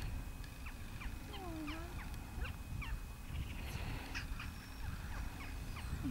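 Wind rumbling on the microphone in the open, with many brief high chirps that slide downward, scattered throughout.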